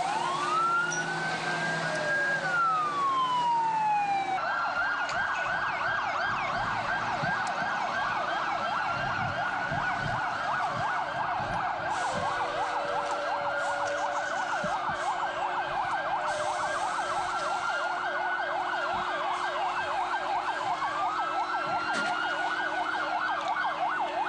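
Several emergency vehicle sirens. A slow wail rises and falls over the first few seconds, then from about four seconds in a fast yelp warbles up and down, with other sirens wailing slowly underneath.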